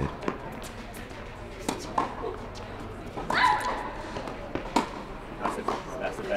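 Tennis ball struck back and forth by rackets in a rally on an indoor court: sharp pops a second or two apart, ringing in the large hall. A short voice-like cry comes about three seconds in.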